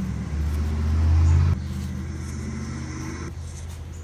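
Harley-Davidson Dyna Street Bob V-twin running through Vance & Hines 3-inch slip-on mufflers. It grows louder for about a second, drops back sharply about a second and a half in, then runs on steadily.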